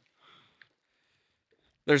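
Near silence with a faint short breath or sniff, then a man starts speaking near the end.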